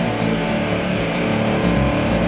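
Heavy metal band playing live without vocals: distorted electric guitar over bass and drums, a steady, loud wall of sound between sung lines.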